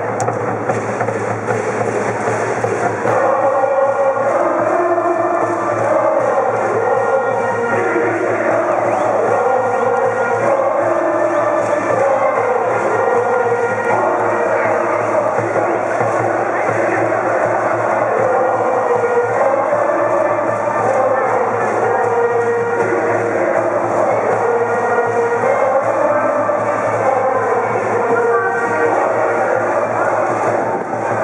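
High school brass band playing a baseball cheer song, with a cheering section of students singing and shouting along.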